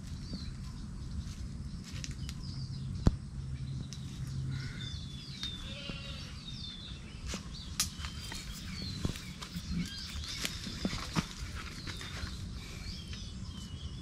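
Streamside ambience of small birds chirping, with scattered sharp clicks, the loudest about three seconds in, and a low hum through the first few seconds.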